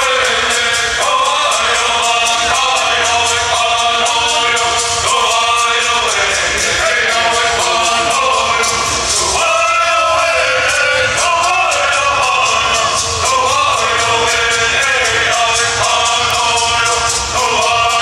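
Live concert music with singing, played loud through a large stage sound system and heard from within the crowd.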